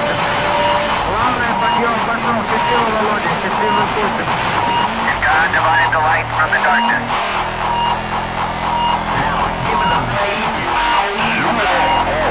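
Hardcore rave DJ mix playing loud from a live tape recording, with an MC's voice over the music. A deep sustained bass comes in about seven seconds in.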